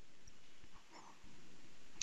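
Quiet room tone and microphone hiss, with one faint, brief sound about a second in.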